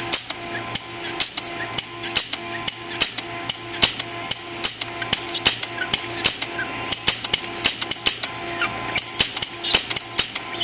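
MakerBot 3D printer with a Frostruder frosting extruder printing: its motors give a steady whine and a tone that pulses on and off a couple of times a second, over a run of sharp, irregular clicks several times a second.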